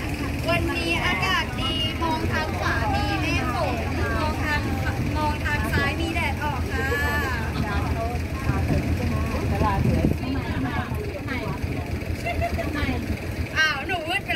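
People talking over the steady low drone of a canal boat's engine.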